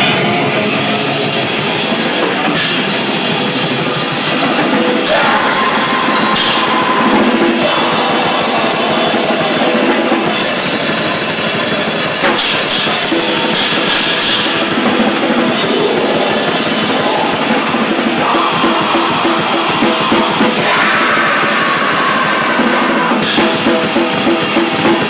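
Live grindcore band playing loud and dense, the drum kit prominent, the music shifting between sections every few seconds.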